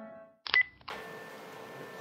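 Background music fading out, then, about half a second in, a brief bright edited sound effect with a ringing tone, followed by faint room tone.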